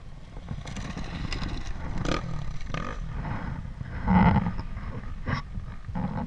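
Dirt bike engine running with a low rumble, swelling to its loudest briefly about four seconds in.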